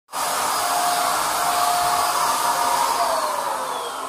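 BuildSkill Pro BPS2100 750 W handheld electric HVLP paint sprayer running, its motor blowing a steady rush of air. Its tone sinks slightly near the end.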